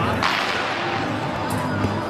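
A quick whoosh about a quarter second in: a tai chi straight sword (jian) swung fast through the air during a double-sword routine.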